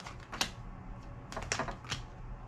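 Tarot cards being handled: a sharp click less than half a second in, then a quick cluster of clicks and taps near the end, as a card is drawn from the deck and laid on the table.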